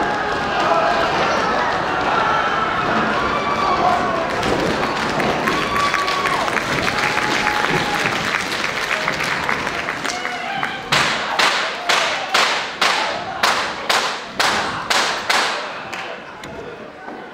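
A stage brawl scene: many cast voices shouting at once over a noisy wash of stage sound. About eleven seconds in, this gives way to a run of about a dozen heavy thumps in an even rhythm, about two a second, each ringing briefly in the hall.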